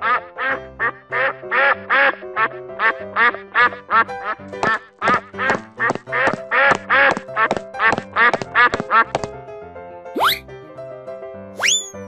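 Rapid, repeated duck quacking, several quacks a second, over steady children's background music; the quacking stops about nine seconds in, followed by two quick rising whistle-like glides.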